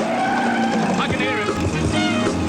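Car sound effect: an engine revving with tyres squealing, mixed with studio audience noise.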